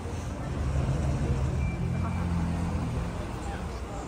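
A car's engine running close by, a low rumble that swells for a couple of seconds and then eases off, under the murmur of people talking.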